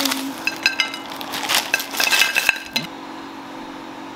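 Plastic candy wrapper being handled and opened: a run of sharp crinkles and clicks lasting about two and a half seconds, stopping near three seconds in.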